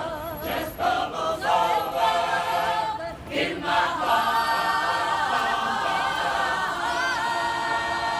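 Mixed choir of men and women singing a cappella, in short phrases at first, then holding one long chord from about four seconds in.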